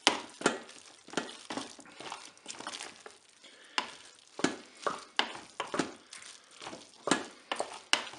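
A wooden spatula stirring a thick mix of pasta, chicken and crème fraîche in the nonstick cooking bowl of a Cookeo multicooker, in irregular strokes about two a second.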